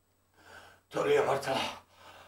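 A man's gasping breath in, then about a second of slurred, moaning voice.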